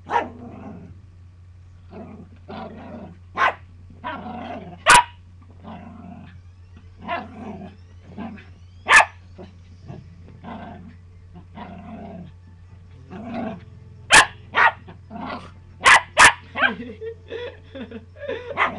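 Small Maltipoo dog barking in excited play, a long string of short barks with a few sharper, louder ones, several of them close together near the end.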